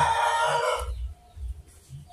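A rooster crowing: a harsh, drawn-out call that cuts off just under a second in.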